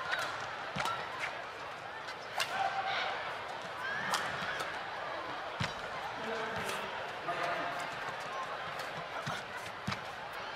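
Badminton rally: sharp racket strikes on the shuttlecock every second or two, with short squeaks of court shoes on the floor, over a low murmur from the arena crowd.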